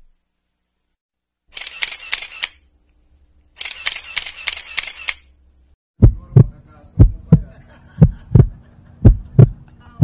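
Two short bursts of rapid camera-shutter clicks, then a deep heartbeat-style thumping sound effect in double beats about once a second, with a faint low hum beneath. The thumps are the loudest part.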